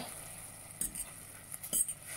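Metal fork stirring noodles in sauce in a stainless steel pot, with a few sharp clinks of the fork against the pot, about a second in and near the end.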